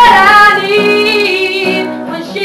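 A woman singing, her voice sliding down into a long held note with a slight waver, over acoustic guitar accompaniment.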